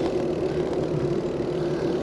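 Steady rolling noise of a bicycle being ridden along a paved trail, with wind buffeting the microphone and a steady low hum underneath.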